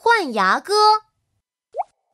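A cartoon voice calls out briefly in two parts, one dipping and rising in pitch and one held level, then a short rising blip sound effect about 1.8 seconds in.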